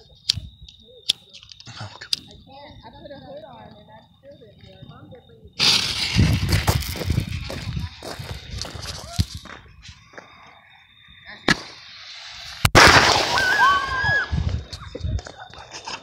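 A few clicks as a lighter fuse is lit, then a firework mortar going off with a loud, long hissing, crackling rush, and a sharp loud bang about thirteen seconds in. The mortar shells are thought to have got wet, and the shot misfires.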